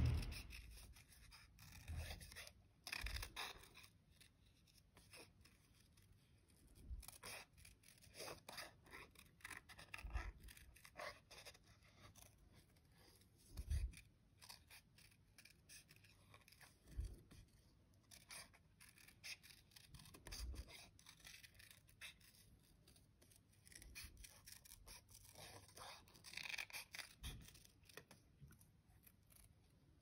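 Small craft scissors snipping around a stamped card cut-out: a faint, irregular run of short snips.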